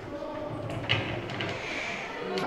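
A door being opened: the latch clicks sharply about a second in, with a few lighter knocks and shuffling footsteps around it.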